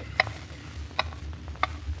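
Hammer pounding nails, three sharp ringing strikes about two-thirds of a second apart, a window molding being nailed back in place, over the low steady hum of a 1940s radio-drama recording.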